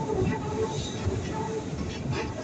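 Keikyu 1000-series electric train running past over a steel truss railway bridge: a steady rumble of wheels on rail, with an intermittent hum from the traction motors.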